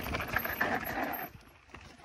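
Mountain bike rolling fast over a dirt trail: tyre noise on the gravelly surface with scattered knocks and rattles from the bike. About a second and a half in, the noise dies away as the bike slows to a stop.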